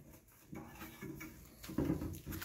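Quiet hand-tool work on a bolt of a bike-trainer rocker plate: faint scraping and small knocks as a side-leg bolt is tightened, with a louder knock near the end.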